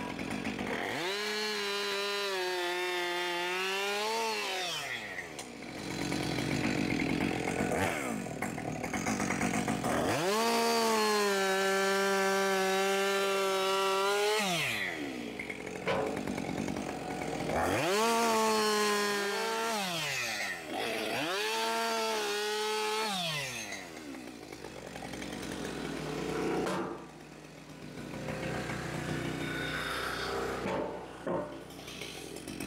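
Gas chainsaw bucking logs: four full-throttle cuts, the second the longest at about four seconds and the last two short and close together. In each cut the engine pitch sags a little as the chain loads up in the wood, then falls back to idle between cuts.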